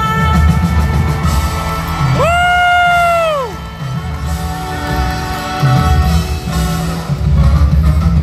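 Live pop music from a concert: a female singer holds one long high note a couple of seconds in, which falls away at its end, over a band with strong bass.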